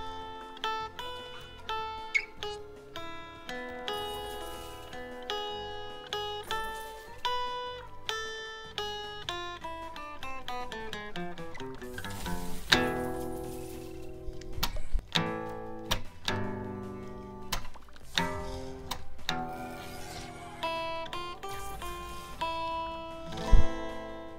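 Slot-game music of short plucked-string notes. Several sharp sound effects break in over it in the second half, the loudest just before the end.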